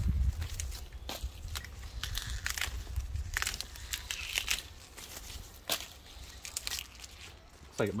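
Dracaena leaves being peeled down off the trunk by hand: a string of short crackling, tearing snaps of leaf breaking away, irregular and uneven in loudness, over a low rumble.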